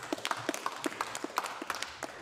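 Light applause from a handful of members at the end of a speech, the separate claps distinct rather than merging into a roar, thinning out toward the end.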